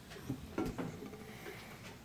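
Quiet room tone with faint, low off-microphone voices and a light click in the first second.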